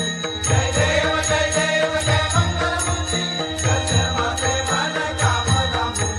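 Devotional chanting music with a steady beat and jingling cymbal strikes about twice a second.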